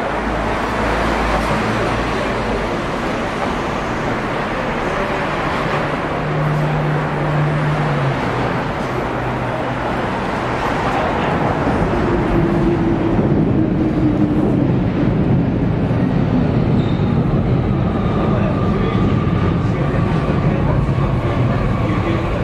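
Busy street ambience: people's voices mixed with road traffic. In the second half a vehicle passes, and its engine tone falls slowly in pitch.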